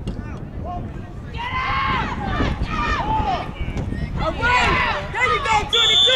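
Several people yelling over a football play, with wind rumbling on the microphone. A long, steady whistle blast starts near the end.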